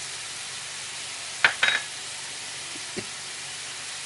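Ground meat sizzling steadily in oil in a frying pan as it browns. A couple of sharp utensil clinks against the pan come about a second and a half in, and a softer knock about three seconds in.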